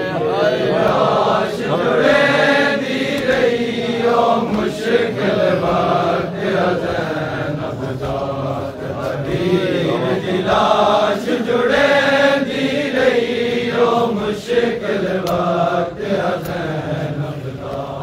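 A group of men chanting a Punjabi noha, a Shia mourning lament for Bibi Zainab, in a continuous sung refrain.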